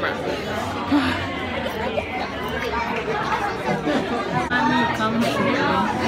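Crowd chatter: many people talking at once, overlapping voices with no single clear speaker.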